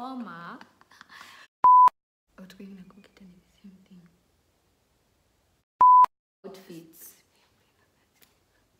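Two loud, steady single-pitch censor bleeps, each about a quarter second long, about four seconds apart, laid over quiet talk.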